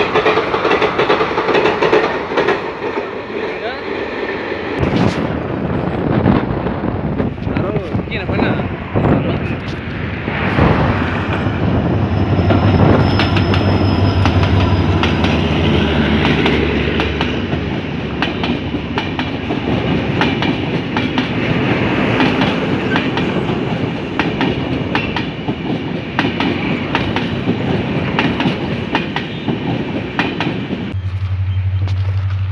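Indian Railways passenger trains running past on the line: a steady rumble with repeated clicking of the wheels over rail joints. The sound changes suddenly about five seconds in, as a different train passing is heard.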